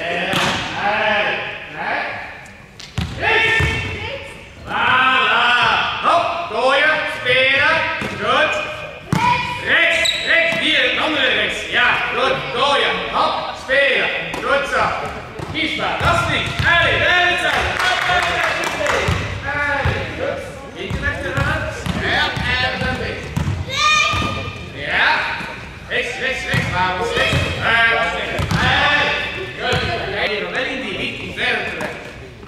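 Volleyballs being hit and bouncing on a sports-hall floor, amid voices that carry on throughout, with the reverberation of a large indoor hall.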